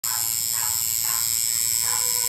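Pen-style electric tattoo machine running with a steady high-pitched whine while its needle colours in a tattoo on skin.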